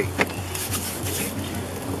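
Partly frozen burger patties sizzling faintly on a gas grill set to low, over a steady low hum, with one sharp tap just after the start as the copper grill mat is handled on the grate.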